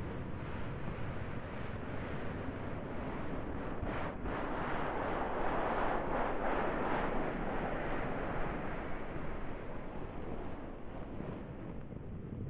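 Hands rubbing and massaging the ears of a 3Dio binaural microphone, heard as a close, muffled rushing noise like wind or surf that grows louder in the middle and then eases.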